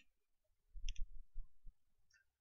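A few short, faint clicks of a computer mouse about a second in, with soft low bumps from the desk.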